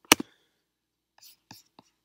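A sharp computer mouse click, with a smaller click just after it, then only a few faint short ticks.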